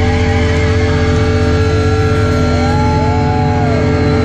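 A crossover thrash band's closing chord rings out through the PA: distorted electric guitars and bass hold a steady drone, with feedback tones wavering in pitch above it.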